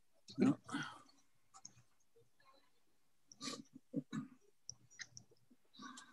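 Faint, intermittent snatches of muffled speech and small clicks coming through the open microphones of a video call.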